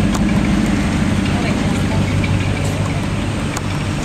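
Steady low exhaust drone of a 1979 Lincoln Continental Mark V's V8 running in traffic, loud through a real bad muffler.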